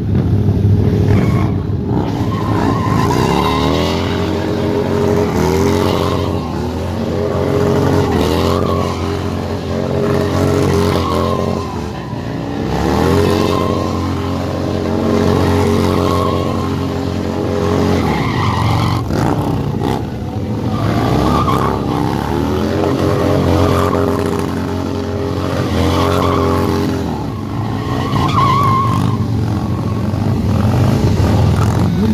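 Motorcycle doing a burnout: the engine is held at high revs, climbing again every four to six seconds, while the rear tyre spins and screeches on the asphalt.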